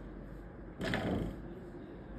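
A brief handling noise on the manual force-gauge test stand, a single half-second rub about a second in, over quiet room tone.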